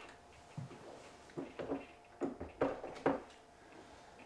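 About six light knocks and clicks spread over a few seconds: hands handling a foam-and-plastic RC model airplane on a workbench.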